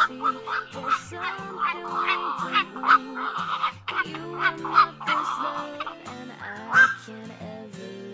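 Black-crowned night herons calling: several short, loud single calls at uneven intervals, over background pop music with singing.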